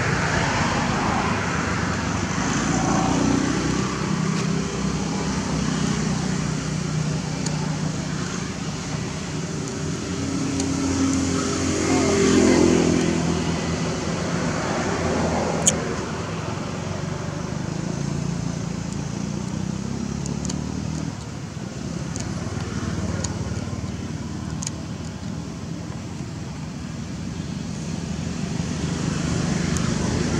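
Steady drone of motor-vehicle engines, as from traffic, swelling about twelve seconds in. A single sharp click comes near sixteen seconds.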